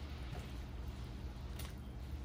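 Water boiling in a small skillet, a faint steady bubbling with a low hum underneath and a soft tap near the end as tomatoes are dropped in.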